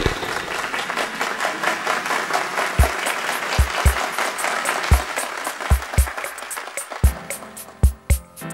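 Audience applause, fading away under a drum beat. Light ticking cymbal strokes run throughout, and low kick-drum thumps start about three seconds in.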